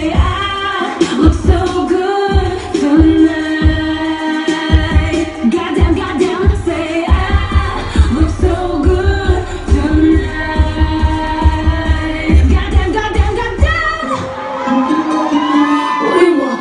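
Loud club pop music with a steady heavy bass beat and a singer's voice over it, played through a club sound system. The bass beat drops away near the end.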